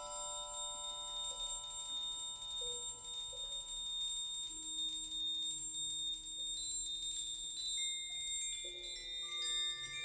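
Slow, quiet contemporary percussion music made of long sustained ringing metal tones. Very high pitches hold throughout while lower notes enter and fade one at a time. Faint light ticking runs underneath.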